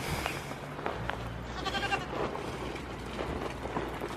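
A goat gives one short, high bleat about halfway through, over small knocks and rustling as goats step on the wooden floor and straw.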